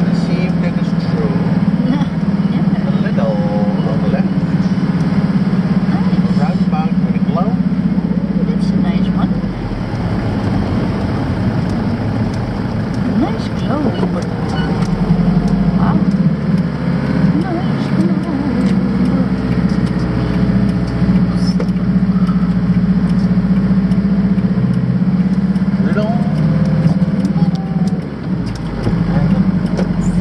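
Camper van driving, heard from inside the cab: a steady low engine drone with tyre noise on a wet road. The drone drops back for a few seconds about ten seconds in, then returns.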